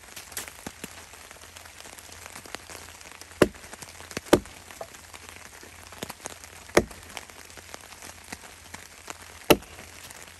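Small axe splitting wood on a chopping block: four sharp chops, a pair about a second apart in the first half and two more spaced out later, the last near the end. Steady rain patters on the tarp overhead throughout.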